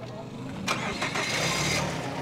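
A car engine starting about two-thirds of a second in: a sudden burst of noise that settles into the engine running.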